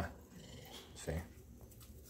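A bulldog makes one short, low vocal sound about a second in, against a quiet kitchen.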